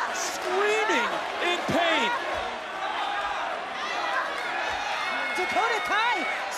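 Arena crowd shouting and cheering, many voices overlapping, with a few dull thumps.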